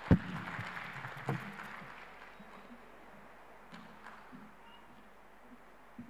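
Audience applause in a large hall, fading away over the first two seconds after a speech ends. A loud thump on the lectern microphone comes just at the start, and a smaller one about a second later.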